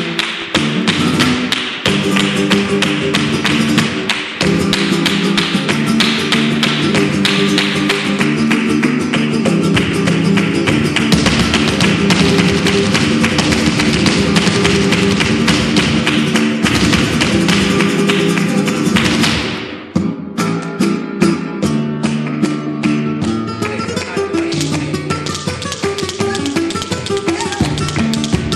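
Vintage flamenco recording of a colombiana: flamenco guitar under rapid percussive taps of zapateado footwork. The dense sound dips briefly about two-thirds of the way through, then the guitar and sparser taps carry on.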